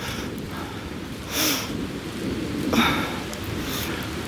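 Steady rain falling, with a low rumble underneath and a few short breathy puffs close to the microphone, about a second and a half in, near three seconds and near the end.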